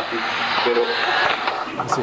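Indistinct voices, muffled and in the background, over a steady hiss.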